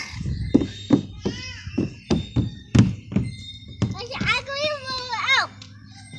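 A toddler's high-pitched wordless vocalizing, with the longest stretch in the second half, among about eight irregular dull thuds.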